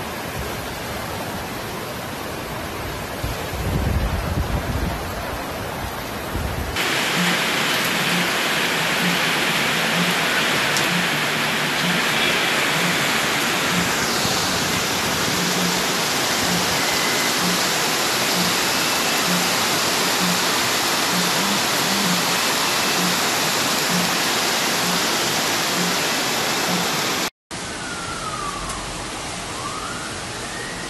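Heavy rain and rushing floodwater, a loud steady roar of water whose brightness jumps where one clip cuts to the next. Near the end a warning siren starts up, its pitch sweeping down and then up.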